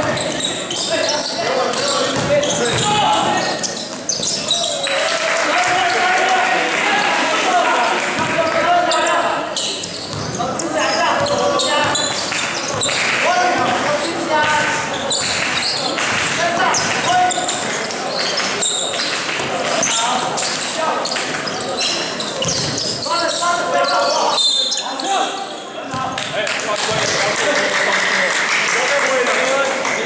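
A basketball bouncing on a gym court as it is dribbled, with many voices of people shouting and talking in a large gym.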